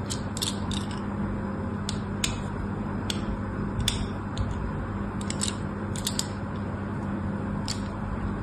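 Craft-knife blade cutting into a bar of soap: short, crisp scraping cuts that come singly and in quick clusters, over a steady low hum.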